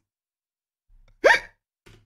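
A person's single short vocal yelp, rising sharply in pitch, a little past the middle of an otherwise wordless pause.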